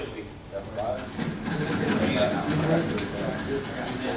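Indistinct, low voices of people talking quietly, with no clear words.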